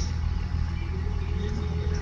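Engine of a stopped vehicle left running at idle, a steady low rumble heard from inside its cabin, with a faint higher hum over it in the second half.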